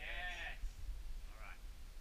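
A climber's short, strained wordless cry of effort, rising then falling in pitch, followed by a fainter vocal sound about a second and a half later.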